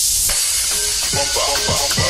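Electro house club mix in a breakdown: the kick drum drops out, leaving a high hissing noise. Short synth stabs with falling pitch sweeps come in about a second in.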